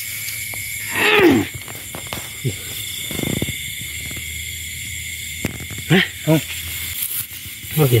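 Steady high chirring of night insects, with a person's voice calling out in one long falling slide about a second in and brief talk near the end.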